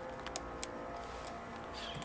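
A few faint short clicks over a low steady background, as a plastic twist-on wire nut is screwed onto the floodlight's black wires.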